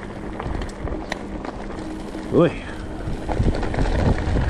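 Alloy Santa Cruz Bronson V3 mountain bike rolling down a loose gravel road, its tyres crunching with scattered small ticks of stones, growing louder toward the end. The rider lets out an "ooh" about two seconds in.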